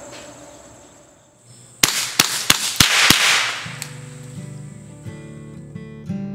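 Five quick shots from a Ruger 10/22 Takedown .22 semi-automatic rifle, about three a second, each a sharp crack. Acoustic guitar music starts right after the string of shots.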